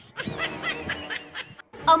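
A person snickering: a short run of laughs that breaks off near the end.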